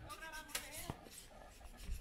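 Faint distant voices with two sharp clicks, about half a second and about one second in.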